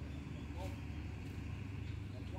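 Steady low outdoor background rumble, with faint distant voices.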